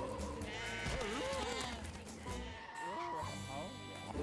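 Cartoon background music with several short, wavering voice calls from the animated characters, about one and three seconds in.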